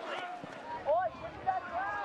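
Short shouted calls from voices on or around a soccer pitch, one about a second in and another near the end, over faint open-air stadium crowd noise.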